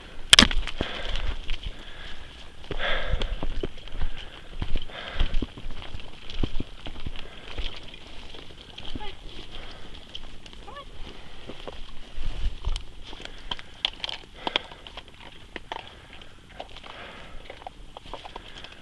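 Footsteps and rustling through leaves and brush as people and leashed dogs walk a forest trail, with many small clicks and one sharp knock just after the start. A steady high-pitched hum runs underneath.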